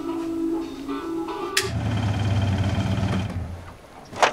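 Music plays and cuts off abruptly about one and a half seconds in. It gives way to a car engine running low and steady, which dies away shortly before the end.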